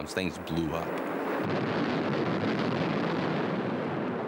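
Bomb explosion: a long, even rush of noise lasting about three seconds, starting about a second in.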